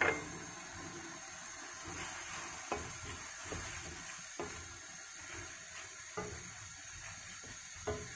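Chopped beef innards simmering and sizzling in a wok with calamansi juice just added, with a clink at the start and a few scattered taps and scrapes of a utensil as the mixture is stirred.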